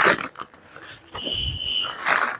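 Paper rustling as a folded newspaper sheet is opened and handled, then a brief, high, steady whine near the end.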